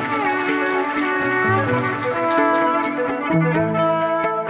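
Several layered violin parts playing back from a loop pedal: held notes and sliding pitches over a lower line, which gets stronger a little over three seconds in.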